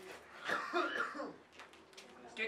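A person coughing briefly, about half a second in.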